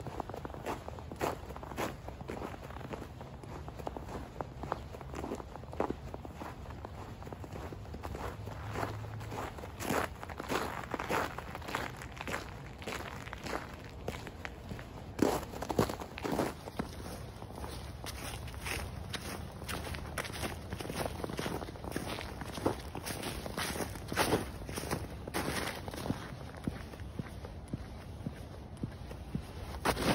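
Quick footsteps of winter boots crunching through snow, a steady stride of short crunches with a few heavier steps.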